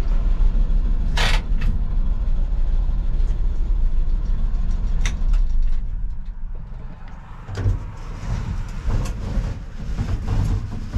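Engine idling, heard from inside the cab of a 1966 Chevrolet C20 pickup, with a short hiss about a second in. The idle rumble drops away about six seconds in, followed by a few knocks and rattles near the end.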